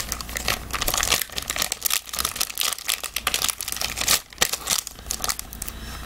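Gold foil card-pack wrappers crinkling as they are handled, a dense run of crackles.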